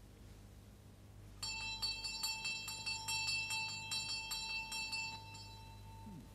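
A small bell ringing in a quick run of strikes, about four or five a second for nearly four seconds: a visitor ringing a house doorbell.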